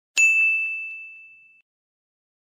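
A single bright bell-like chime sound effect: one high ding, struck about a tenth of a second in, ringing down over about a second and a half, with two faint after-taps.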